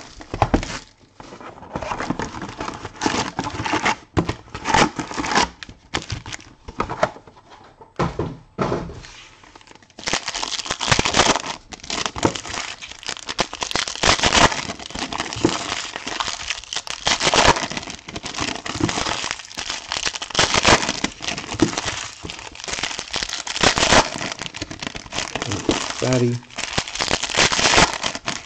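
Foil trading-card pack wrappers being torn open and crinkled by hand: irregular crackling and tearing, sparse at first and then dense and loud from about ten seconds in.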